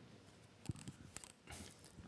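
Near silence, broken by a few faint sharp clicks in the middle and a brief rustle about a second and a half in: small handling noises.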